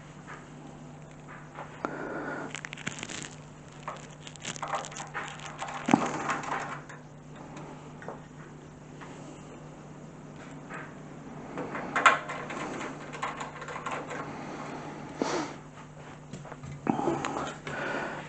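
Faint scattered clicks, scrapes and taps of a Cooler Master HAF 912 PC case being handled while a screw is fitted, the sharpest clicks about six and twelve seconds in, over a steady low hum.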